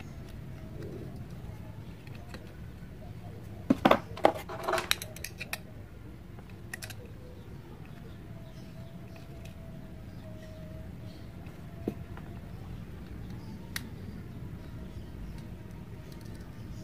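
Small handling noises while wires are soldered onto a subwoofer's terminals: a quick cluster of sharp clicks and taps about four seconds in, and single clicks later, over a steady low hum.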